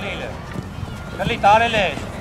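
Voices shouting across an outdoor football pitch, with a loud high call about a second and a half in, over a few faint thuds.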